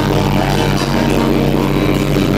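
Live rock band playing loud through an outdoor stage PA, with distorted electric guitars over drums.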